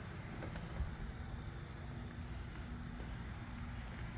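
Faint outdoor background: a steady low rumble with a soft knock about a second in.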